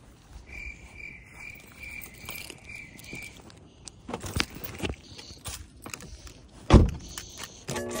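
A car's warning chime beeps evenly, about three times a second, for some three seconds. Handling knocks follow, then a car door shuts with one heavy thud about seven seconds in. Music with pitched notes starts just before the end.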